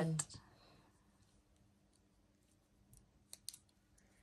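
A quiet room, then a few small, sharp clicks about three seconds in: beads of a bracelet clicking as it is fastened around a baby's wrist.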